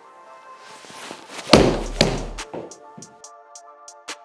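Background music, with a loud deep-bass hit about a second and a half in, then the sharp thunk of a golf iron striking a ball into a simulator screen just after two seconds.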